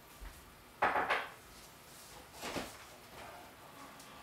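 Kitchen dishes and utensils being handled off-camera: two quick clattering knocks about a second in, and a softer one about two and a half seconds in.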